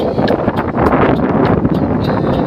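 Strong wind buffeting the microphone, a loud, rough rumble.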